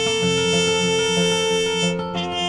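Instrumental music: an acoustic guitar strummed in a steady rhythm under a trumpet holding one long note.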